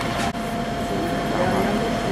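A steady machine drone with a constant whine running through it.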